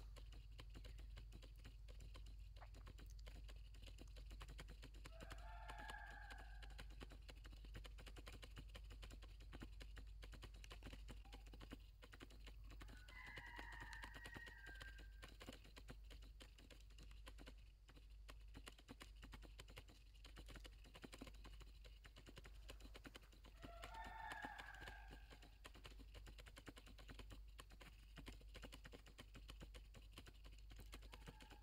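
Near silence: faint, dense ticking throughout, with three faint short calls spread about eight to ten seconds apart.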